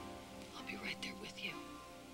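Soft background music with sustained, held chords, with a brief hushed, whispered voice in the middle.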